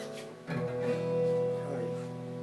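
Gypsy-jazz (Selmer-Maccaferri type) acoustic guitar with a small oval soundhole being strummed. A light stroke comes at the start, then a fuller chord about half a second in that rings on, with a few notes shifting near the end.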